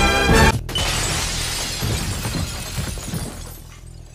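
Orchestral theme music cuts off about half a second in; after a brief gap, glass shatters and the fragments scatter, the sound dying away over about three seconds.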